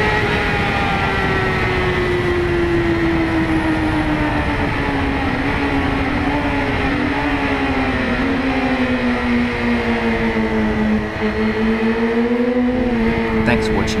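Kawasaki ZX-6R inline-four engine heard onboard, its note falling slowly and steadily as the bike rolls off the throttle at the end of the straight, with a brief small rise and fall again near the end. Steady wind rush over the camera.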